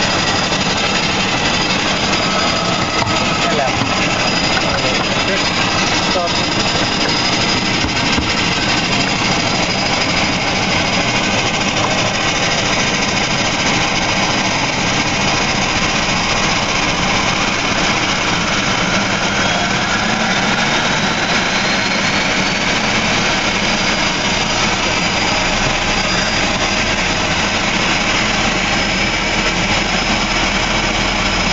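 DHC-6 Twin Otter's Pratt & Whitney Canada PT6A turboprop running steadily just after light-up on engine start, heard loud inside the cockpit, with a turbine whine that rises in pitch about halfway through.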